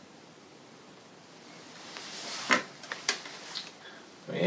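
Handling noise from the painter moving away from the easel: a rustle that builds, then a few sharp clicks and knocks. The loudest knock comes about two and a half seconds in.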